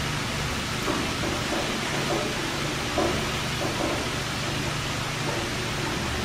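Steady room hiss of air conditioning, with a few faint soft handling sounds.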